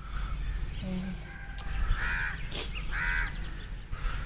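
A bird calling twice, about a second apart, over a steady low rumble.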